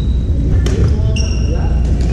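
Badminton play on a wooden gym floor: two sharp racket-on-shuttlecock hits, just over half a second in and near the end. Between them comes a high sneaker squeak. Background chatter and a steady low rumble fill the hall throughout.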